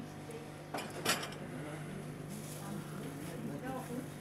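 Indoor room tone: a steady low hum, with two short clinks about a second in and faint voices in the background near the end.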